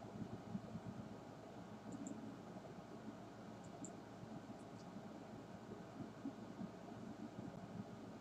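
Faint room tone and microphone hiss, with a few small clicks around two and four seconds in.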